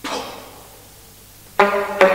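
A short, sharp, noisy attack dies away over about half a second. About 1.6 seconds in, an alto saxophone comes in with a loud, hard-tongued sustained note in an extended-technique contemporary solo.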